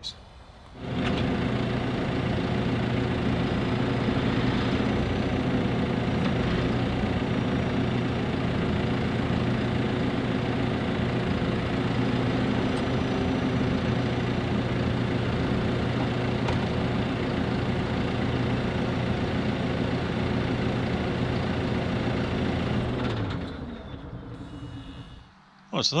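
JCB telehandler's diesel engine running steadily while its boom lifts a tractor front linkage on chains; the engine sound fades away near the end.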